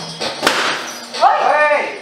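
A single sharp bang about half a second in, followed by a short vocal exclamation that rises and falls in pitch.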